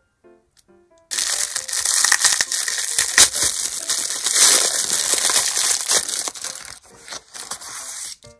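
Clear plastic cellophane wrapper crinkling loudly as it is peeled and scrunched off a roll of washi tape. The dense crackle starts about a second in and thins out near the end.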